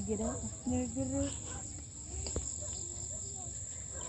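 Crickets trilling in a steady, high-pitched drone, with faint voices in the background during the first second or so.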